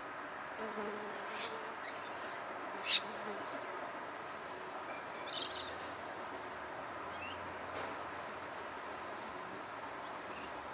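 Steady outdoor background hiss, with a few faint, short high chirps scattered through it and one sharp click about three seconds in.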